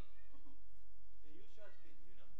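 A man's voice on stage giving short vocal sounds that glide up and down in pitch, over a steady low electrical hum.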